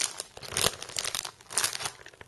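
Plastic packaging being handled and torn open, crinkling in a few irregular bursts, the loudest about half a second in and again near the end.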